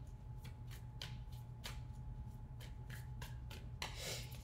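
A deck of tarot cards being shuffled by hand: a run of quiet, irregular flicks and slaps as the cards slide over one another.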